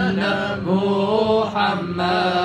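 Men chanting a devotional Arabic refrain together, a melody moving over a steady low held note, with a hand-played frame drum struck near the start and again about one and a half seconds in.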